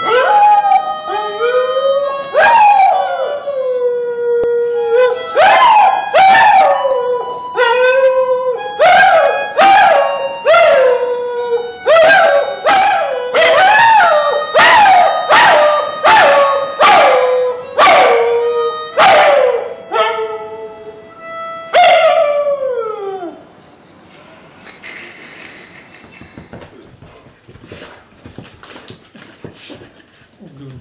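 A dog howling along to a harmonica: a run of howls about a second apart, each sliding down in pitch, over the harmonica's held chords. The howling stops about three-quarters of the way through.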